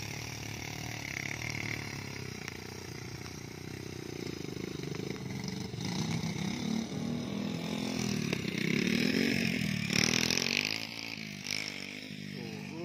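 Small motorcycle engine running close by, its pitch wavering as the throttle changes, growing louder about halfway through and loudest shortly before the end, then dropping off.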